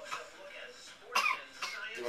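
Wordless voice sounds from a man and a young girl play-wrestling, with a short, sharp vocal burst a little over a second in.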